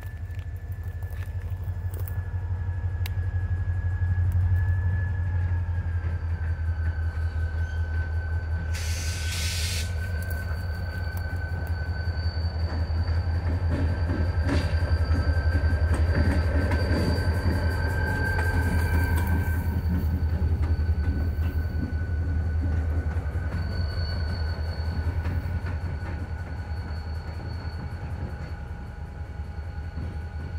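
Freight train of double-stack intermodal well cars rolling past close by: a steady low rumble of steel wheels on rail with repeated clicks of wheels over rail joints. A thin, steady high-pitched squeal of wheel flanges runs over the rumble, with a brief hiss about nine seconds in.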